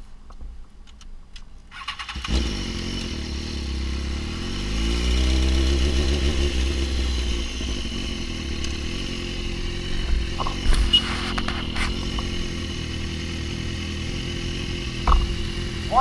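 BMW S1000RR inline-four sport-bike engine under way, heard from the rider's own bike with wind rush. It comes in abruptly about two seconds in, rises in pitch as the bike accelerates, then runs on steadily.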